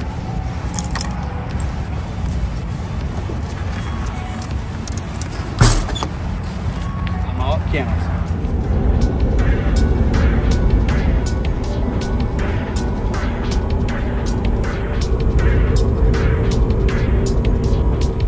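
Steady low road and engine rumble inside a moving truck's cabin, with one sharp knock about five and a half seconds in. Background music with a steady beat comes in over it from about eight seconds.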